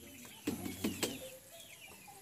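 Faint chirping of birds, a few short high calls spread across the moment, with two light knocks about half a second and nearly a second in.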